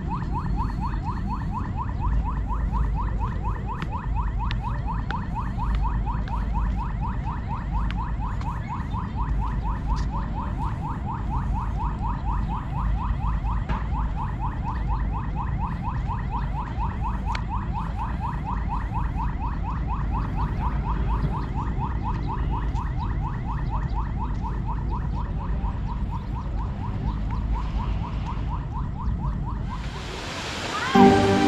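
Wind rumbling on the microphone, with a steady, rapidly pulsing buzz above it.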